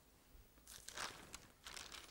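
Thin book pages rustling as they are turned, in two short bursts about a second in and near the end.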